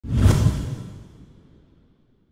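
A whoosh sound effect with a deep rumble underneath, swelling quickly about a third of a second in and fading away over the next second and a half.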